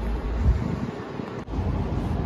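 Low rumbling handling noise on a handheld phone's microphone, breaking off abruptly about one and a half seconds in, followed by steady low room noise.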